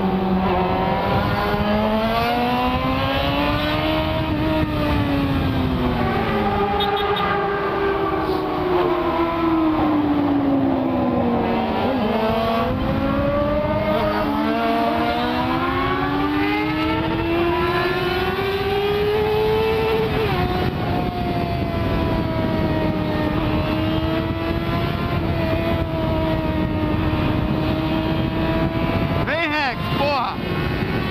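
Yamaha FZ6 inline-four engine accelerating hard through the gears, its pitch rising and falling several times, with a long climb that drops suddenly at a gear change about two-thirds through and then holds steady at high speed. Wind rush on the helmet-mounted microphone runs underneath.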